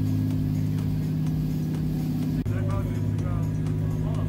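Dive boat's engine running steadily under way, a low even drone, with faint voices in the background. The drone drops out for an instant a little past halfway.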